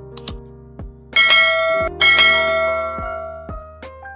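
A quick double click, then two bright bell chimes about a second apart, each ringing out and fading: a subscribe-button and notification-bell sound effect over background music with a steady beat.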